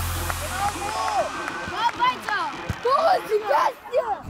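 Music fading out in the first second, then on-pitch sound of an amateur football match: players calling and shouting to one another in short bursts.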